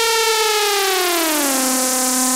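Electronic dance music breakdown: with the drums dropped out, a single sustained synthesizer note slides down in pitch for about a second and a half, like a siren winding down, then holds steady.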